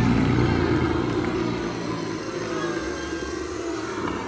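An inserted sound clip introducing a podcast segment: a dense, noisy rumble with a steady low hum, loudest at the start and slowly fading.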